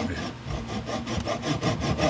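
A fine hand saw blade sawing back and forth through a wooden plug in a Rickenbacker 425 guitar body, in a run of quick, short rasping strokes, to cut the plug out.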